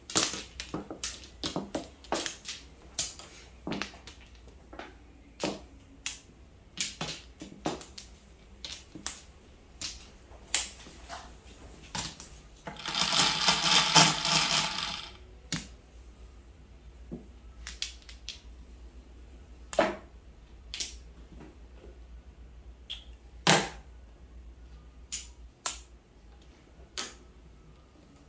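Mahjong tiles clacking on a felt-covered table as players draw and discard: sharp single clicks every second or so, with a dense rattling flurry of tile clicks about halfway through.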